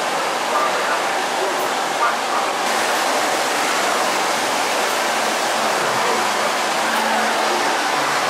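Steady rushing noise that grows brighter and hissier about two and a half seconds in, with faint indistinct voices under it.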